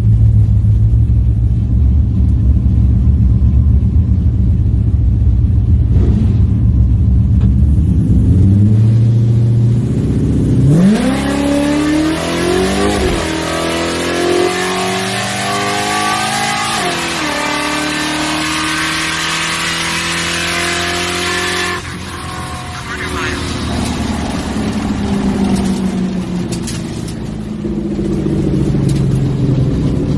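Supercharged Coyote 5.0 V8 of a 1979 Ford Fairmont drag car on low boost, heard from inside the cabin. It idles steadily on the line, then launches about ten seconds in and runs a full-throttle quarter-mile pass, the revs climbing and dropping at each upshift of the 6R80 automatic. About 22 seconds in the throttle closes and the engine falls back as the car slows down.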